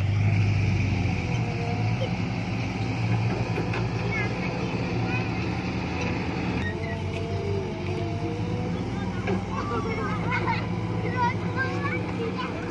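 Diesel engine of a Caterpillar 312 hydraulic excavator running steadily with a low hum while it digs. High children's voices call out over it, more of them near the end.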